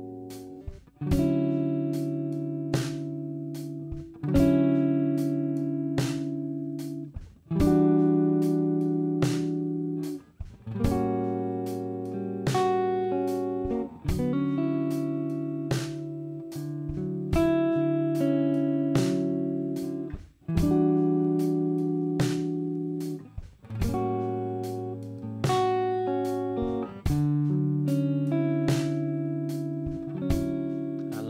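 Clean Stratocaster-style electric guitar playing a slow major ii–V–I in D with extended voicings: E minor 9, A13 flat 9 and D major 9. Each chord is struck and left to ring for a few seconds before the next, over a slow drum backing.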